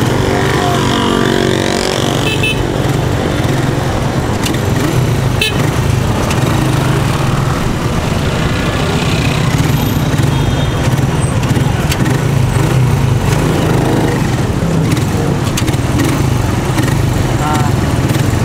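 Rusi motorcycle engine of a tricycle running steadily while riding slowly in city traffic, heard from the sidecar, with street noise around it.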